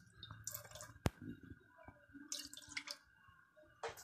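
Milk poured from a plastic container into a kadai, a faint pouring and splashing of liquid, with one sharp click about a second in.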